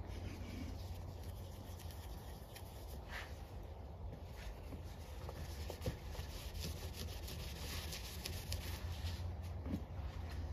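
Faint rubbing of a microfiber cloth wiping freshly applied touch-up paint off a car's painted body panel, over a low steady hum.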